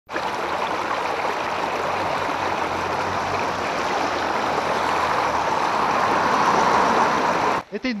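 Water from a burst half-metre water main welling up through a break in the asphalt and running over the road: a steady rush of flowing water that cuts off suddenly near the end.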